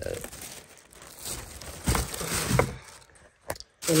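A thin plastic carrier bag rustling and crinkling as it is handled, with a few sharper crackles about halfway through.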